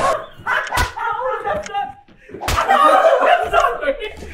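Pillows whacking into people, two sharp hits about a second in and again midway, amid excited voices and laughter.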